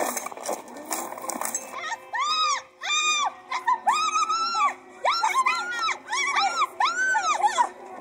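High-pitched whimpering or crying calls, about a dozen short ones, each rising and falling in pitch, starting about two seconds in and following one another quickly. Heard through a laptop speaker.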